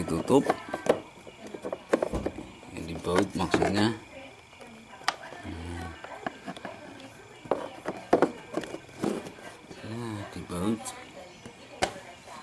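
Indistinct talking, with a few sharp clicks spread through, the kind made by hands handling plastic panels and wiring around a scooter's battery compartment.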